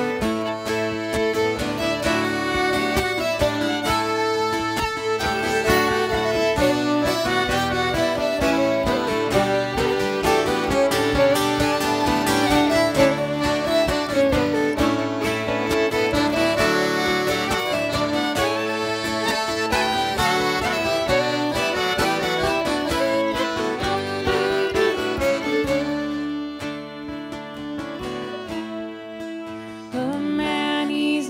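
Instrumental break of an acoustic folk tune: two fiddles playing the melody over acoustic guitars and a squeezebox. The music gets quieter over the last few seconds, before the next verse.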